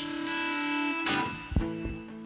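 Live rock band opening a song: a distorted electric guitar chord rings out, a new chord is strummed about a second in, and two low drum hits follow.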